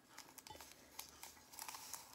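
Faint crinkling and rustling of paper Truvia sweetener packets being handled, with a few light scattered ticks.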